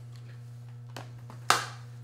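A sharp click or knock about one and a half seconds in, with a fainter tick just before it, from objects being handled while an insect specimen is fetched; a steady low hum runs underneath.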